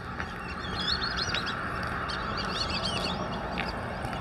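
A flock of birds chattering and calling, with many short, overlapping chirps, over a steady hiss.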